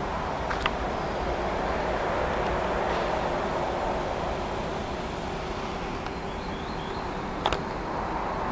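Steady outdoor background noise with a faint steady hum, broken by two short clicks, one near the start and one near the end.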